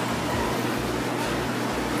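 Steady background noise: an even hiss with a low hum and uneven low rumbles under it.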